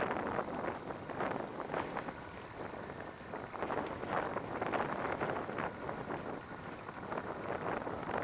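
Gusting wind buffeting the microphone, with the engine of a Land Rover Defender underneath as it crawls up a rocky, waterlogged track toward the listener.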